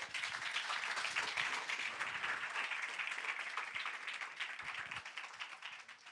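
Audience applauding, a dense patter of many hands clapping that thins out near the end into a few scattered claps.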